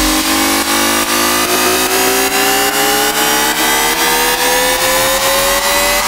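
Build-up in an electronic dubstep track: a stack of synth tones sweeps slowly upward in pitch over a steady clicking beat, with the heavy kick drum held out until just after the rise.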